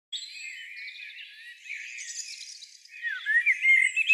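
Several birds chirping and whistling together, a busy tangle of short calls and quick pitch glides that grows louder near the end.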